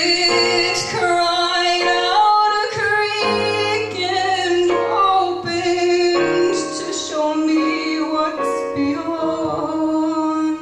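A woman singing long held notes over her own accompaniment on a Casio Privia digital piano.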